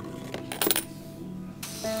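A quarter dropping into a K'nex coin sorter, with sharp clicks about half a second in and a short rush of noise near the end as it passes through and is accepted, switching the claw machine on. Background music plays throughout.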